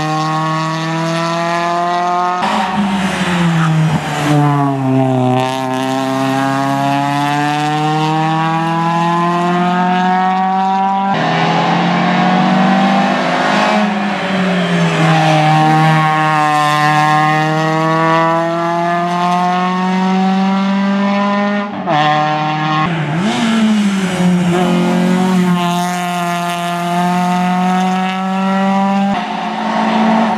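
Renault Clio hillclimb race car's four-cylinder engine revving hard, its pitch climbing through the gears and dropping on lifts and downshifts for the bends. The sound jumps abruptly a few times.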